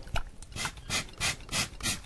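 Quick, even rubbing strokes close to the microphone, about three a second, made by a hand working something red.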